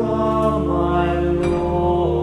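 Small male vocal ensemble singing slow, held chords, accompanied by an Allen electronic organ sustaining low bass notes beneath the voices.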